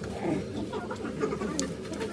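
Low murmur of several people's voices around a small restaurant dining room, with wavering low-pitched vocal sounds and a few faint clicks of utensils.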